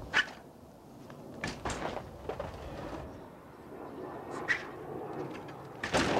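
A BMX bike being ridden on a ramp: a sharp knock just after the start, then the rumble of tyres rolling, with scattered knocks and clacks from the bike and ramp that bunch together near the end.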